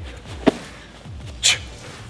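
Sandbag snatch reps: a sharp thump about half a second in and a short hissing burst about a second later, over background music with a steady beat.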